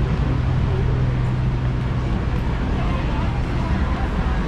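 Busy city street ambience: a steady low engine hum from nearby traffic, fading near the end, under indistinct voices of passers-by.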